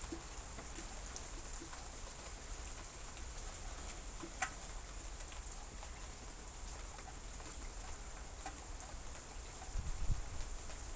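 Steady rain falling: an even, quiet hiss with scattered faint drip ticks and one sharper tick about four and a half seconds in.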